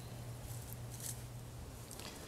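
Faint scratching and rustling of soil and dry mulch as a finger pushes a pea seed into the bed, over a low steady hum.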